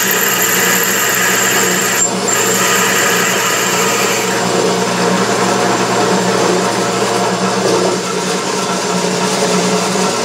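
Drill press running steadily, its twist drill cutting through a metal lathe-chuck backing plate: a constant motor hum with cutting noise over it.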